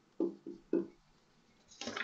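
Phone notification: three short tones in quick succession within the first second.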